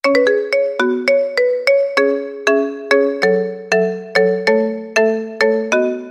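Mobile phone ringtone for an incoming call: a melody of quick struck notes with chords, about two or three notes a second, each decaying after it sounds.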